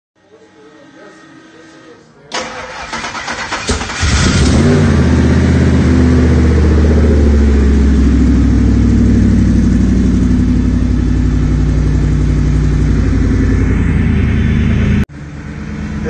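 Turbocharged Coyote 5.0 V8 in a Ford F-150 Lightning being cranked by the starter about two seconds in. It catches after about a second and a half, the revs flare and settle, and then it runs steadily. The sound cuts off suddenly near the end.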